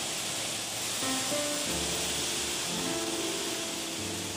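Steady rushing of a waterfall plunging into a pool, with soft background music of slow held notes over it.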